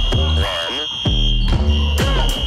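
Background music with a steady beat and a long held high tone over it.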